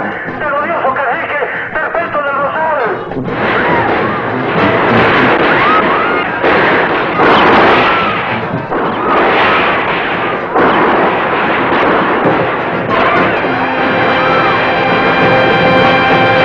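Film soundtrack music: singing over music at first, then about ten seconds of dense, loud noise in surges that sounds like blasts mixed into the music, then a held orchestral chord from about thirteen seconds in.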